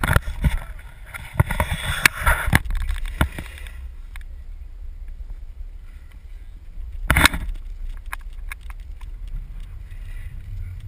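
Longboard wheels rolling on asphalt, a rough, clattering noise for the first few seconds as a rider passes close, with a steady rumble of wind on the microphone. About seven seconds in there is one short, loud rush of noise.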